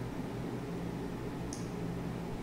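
Steady hiss with a faint low hum, the background noise of a small room's recording between narration, with one brief faint high tick about one and a half seconds in.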